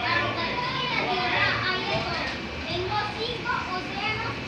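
Many children's voices talking and calling out at once, an overlapping chatter with no single clear voice.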